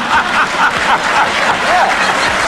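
A studio audience laughing, many voices at once.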